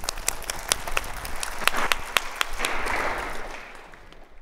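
Audience applauding at the close of a talk: many individual claps, fading away near the end.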